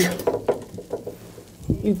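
A man's excited voice trailing off, then a few light knocks and rustles of clothing and gear being handled in a cramped ground blind, a low thump near the end, and the first word of renewed cheering.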